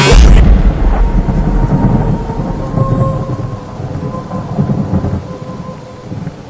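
Thunder rumbling over the hiss of steady rain. It is loudest in a deep boom at the start and fades away over several seconds.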